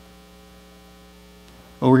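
Quiet, steady low electrical hum, unchanging in pitch, with a man's voice starting just before the end.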